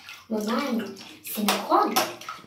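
A child's voice in two short sing-song phrases, over light splashing as a hand moves a doll through shallow water in a small tub.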